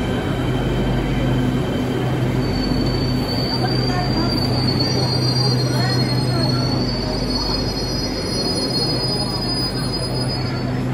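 Beijing Subway Line 5 train moving slowly alongside the platform with a steady low hum; a thin, high-pitched wheel squeal starts about two and a half seconds in and carries on to the end.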